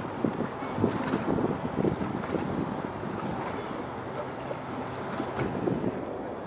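Wind buffeting the microphone in uneven gusts, over a faint wash of open water.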